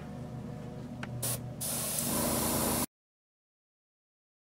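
Gravity-feed airbrush spraying black paint: a short burst of air hiss a little past a second in, then a steadier hiss from about two seconds that cuts off suddenly, over a steady low hum.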